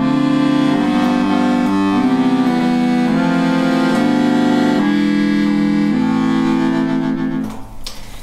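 Barcarole Professional chromatic button accordion's bass side played on the register that sounds only its middle two voices, a single-note bass voice and the lower chord voice. A run of sustained bass notes and chords changes every half second to a second and stops shortly before the end.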